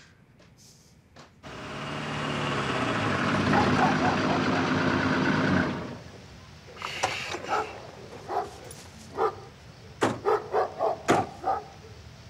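A car engine growing louder for about four seconds as the car arrives, then cutting off suddenly. Then a dog barks repeatedly in short separate barks.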